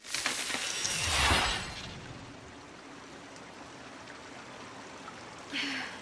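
Cartoon sound effect: a sudden rushing whoosh that swells over the first second and a half and dies away, then a steady soft watery hiss.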